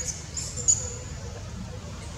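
High-pitched squeaks from a newborn macaque in the first moments, followed by one sharp click about two-thirds of a second in, over a steady low rumble.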